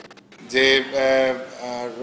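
A man's voice holding a long, drawn-out hesitation word in Bengali ("je…"), sustained at a steady pitch in two long stretches, starting about half a second in.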